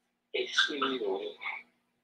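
A short vocal utterance of about a second from a woman's voice, a guttural, croaky phrase or exclamation that starts after a brief silence and breaks off abruptly.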